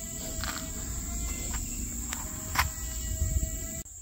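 A steady high-pitched insect trill, with a low rumble on the microphone and a few faint clicks.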